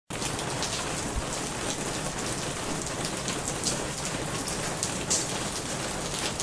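Steady rain, with scattered louder drops.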